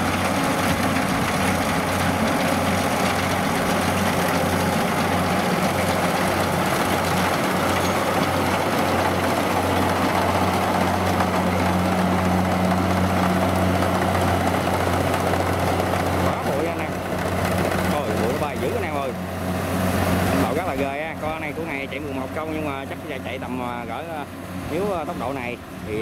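Rice combine harvester's diesel engine and threshing machinery running steadily under load while cutting rice, a loud, dense mechanical din. The noise falls off after about twenty seconds as the machine moves away.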